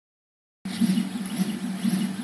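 RepRap Prusa 3D printer's stepper motors driving the printhead and bed through fast print moves, starting about half a second in. Their whine keeps rising and falling in pitch as each short move speeds up and slows down; with 1500 mm/s² acceleration the head seldom reaches its set 250 mm/s.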